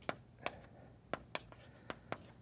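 Chalk writing on a blackboard: about five short, sharp taps and strokes of the chalk against the slate in two seconds.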